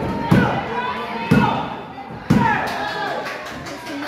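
Three heavy slaps on a wrestling ring's canvas mat, evenly about a second apart: a referee's three-count for a pinfall. Crowd voices and shouts go on between the slaps.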